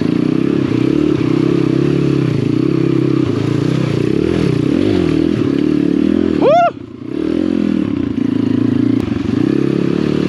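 Apollo RFZ 125cc dirt bike's single-cylinder four-stroke engine running under throttle, its pitch rising and falling with the trail. About six and a half seconds in it revs sharply up, then drops away for a moment before pulling again.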